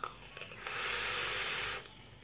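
A draw on a vape with a dripping atomizer: a steady hiss of air and e-liquid vaporizing on the coil, lasting about a second.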